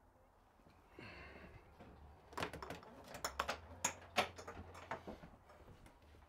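Clicks and knocks of a wall-mounted flat-screen TV being pulled out on its double-arm swing-out mount, coming in a run from about two seconds in.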